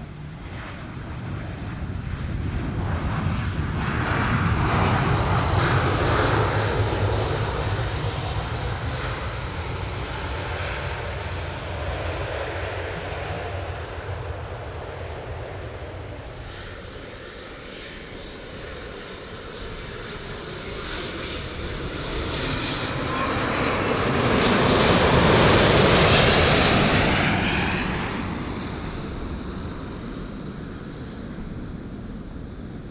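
Boeing 737-800 on its landing rollout, its jet engines spooling up in reverse thrust and swelling a few seconds in, then fading as it slows down the runway. A twin-engine widebody jet on final approach then comes in low, its engine noise building to the loudest point near the end as it passes the microphone and falling away.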